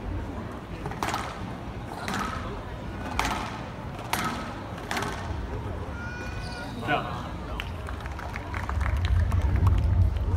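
A squash ball being struck hard in a rally, sharp cracks of racket and wall about once a second, then shoes squeaking on the wooden court floor. Crowd noise rises near the end as the rally finishes.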